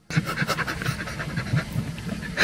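A man laughing, held back behind a hand at his mouth, in quick breathy bursts of about five a second.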